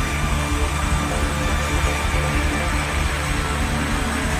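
Live band music playing steadily, with a strong, sustained bass line.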